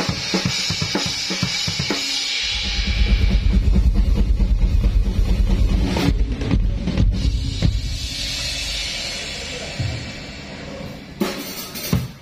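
Drum kit played hard through the festival PA during a soundcheck. Cymbal crashes and snare hits come first, then a long stretch of fast bass-drum strokes, then more crashes and separate hits near the end.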